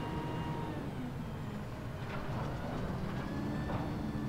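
Roll-off truck's diesel engine running steadily while its hydraulic hoist lowers a steel dumpster container off the bed.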